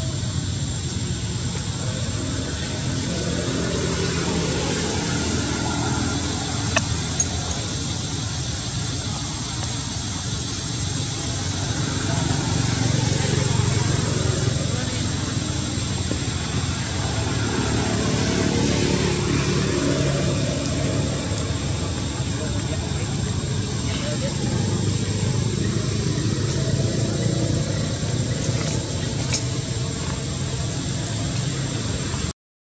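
Indistinct voices talking over a steady low rumble, with a thin steady high tone running through.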